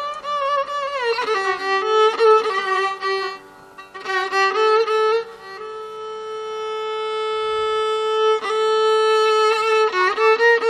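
Violin played in Carnatic style, unaccompanied by voice: ornamented phrases with sliding, oscillating notes, then one long held note that slowly swells, breaking into quick ornaments near the end.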